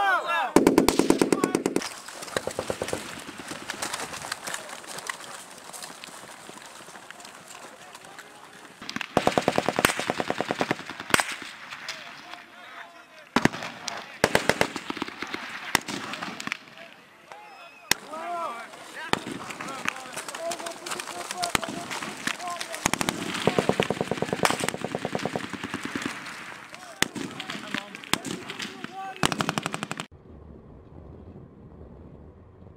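Bursts of automatic gunfire: one about a second in, another around ten seconds in and a third near the twenty-four-second mark, with single sharp shots between them. Voices call out between the bursts.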